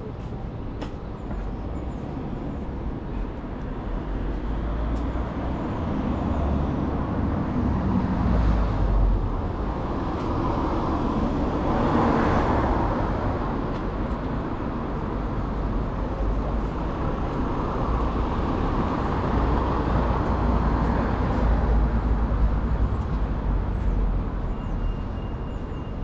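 Road traffic passing along a town-centre street: vehicles swell past, loudest about halfway through and again a few seconds later, over a steady low rumble.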